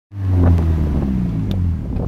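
Engine of a three-wheeled Polaris Slingshot roadster running with a low, steady note as it rolls in, easing off near the end.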